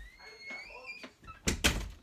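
Interior bedroom door being pulled shut: a thin rising creak as it swings, then a loud bang of the door shutting, twice in quick succession, about one and a half seconds in.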